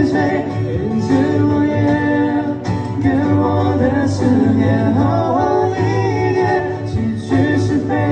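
Live band music: a man singing a Chinese-language song over electronic keyboard accompaniment, with a steady bass line.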